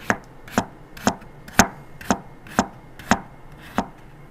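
Chef's knife chopping daikon radish on a plastic cutting board: eight even chops, about two a second.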